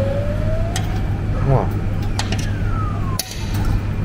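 Claw machine going through a grab: a thin tone rising slowly in pitch for about a second, a few clicks, then a tone sliding down in pitch and a clunk about three seconds in, over a steady low hum.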